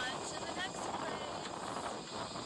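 Loud, steady rushing noise, with a voice heard briefly near the start.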